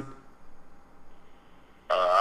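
A quiet pause between speech: faint, steady background noise, with a voice starting again just before the end.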